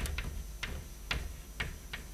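Chalk tapping and scraping on a blackboard as a line of words is handwritten: a quick, irregular string of sharp taps, about six in two seconds.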